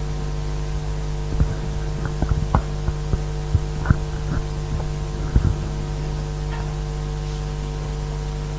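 Steady electrical hum in the microphone and PA chain, with a scattering of short knocks and bumps from a handheld microphone being handled and set up, mostly in the first five or so seconds.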